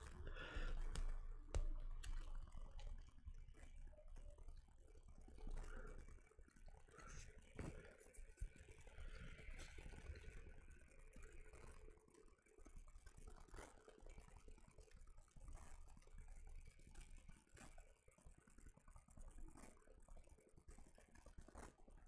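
Faint, scattered clicks and taps of hard plastic model-kit parts being handled and pressed together.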